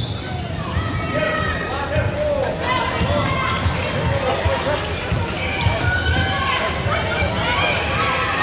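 Many overlapping voices of players and spectators chattering in an indoor sports hall, with a basketball bouncing and thudding on the hardwood court.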